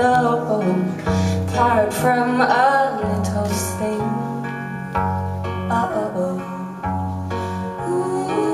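A slow song played live: a woman singing over strummed acoustic guitar, with a cello holding long low notes about a second each.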